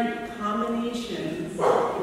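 A woman speaking, with a short breathy burst near the end.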